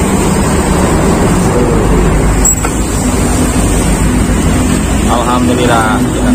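Street traffic noise with a low rumble and a motor engine running nearby; a steady engine hum comes in about halfway through, and voices are heard near the end.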